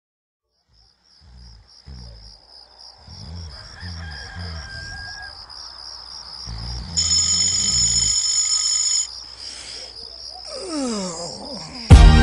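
Opening of a hip-hop track made of morning sound effects: a steady high pulsing chirp of crickets, low bass notes entering about a second in, and a loud rooster crow lasting about two seconds around seven seconds in. A voice starts calling 'wake up' near the end, and the whole intro grows louder.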